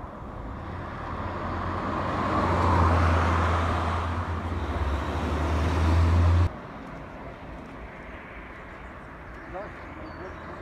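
Fast road traffic: vehicles passing close by, their engine and tyre noise swelling over a few seconds. The sound cuts off abruptly about six and a half seconds in, leaving quieter traffic from further off.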